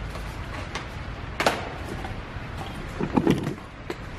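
Workshop handling noise as a vacuum pump and AC gauge hoses are handled: a sharp click about one and a half seconds in, a few lighter clicks, and a brief wavering pitched sound about three seconds in.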